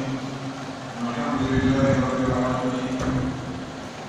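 A man's voice chanting in long held tones, with a brief low rumble about halfway through.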